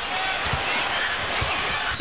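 A basketball being dribbled on a hardwood court, two thuds about a second apart, over steady arena crowd noise.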